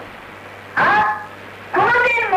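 A man's voice preaching in short phrases with pauses between: one phrase about a second in and another starting near the end, over a steady faint low hum from the old recording.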